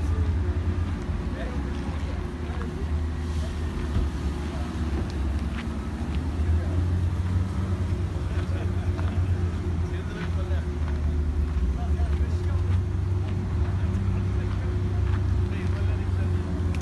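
A steady low rumble with people talking faintly underneath.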